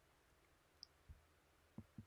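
Near silence, with a few faint short clicks about a second in and again near the end.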